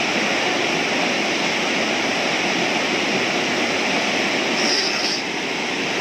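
Steady rushing of river rapids over rocks, with a brief high chirp a little before the five-second mark.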